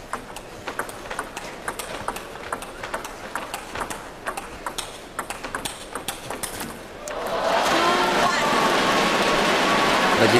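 Table tennis rally: the celluloid ball clicking sharply off paddles and table at an irregular pace for about seven seconds. The point ends and the crowd breaks into cheering and shouting.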